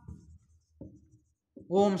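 Marker pen writing on a whiteboard: faint, short scratching strokes in the first half second and one more just before the middle. A man's voice starts near the end.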